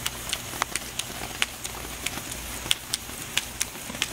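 Burning sparkler crackling: irregular sharp pops and snaps, a few a second, over a faint hiss.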